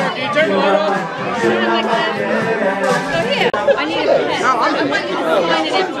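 Bar-room chatter: several people talking at once in a large room.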